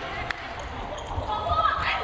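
Volleyball rally: several sharp hits of the ball off players' forearms and hands, with shouted calls from the players near the end.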